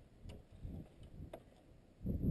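Faint footsteps on a snow-covered shingle roof: a few scattered soft thuds and light clicks.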